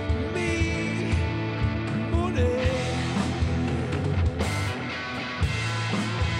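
A rock band playing live on electric guitar, electric bass and drum kit in a passage without vocals, with steady drum hits under the chords and a few notes sliding in pitch.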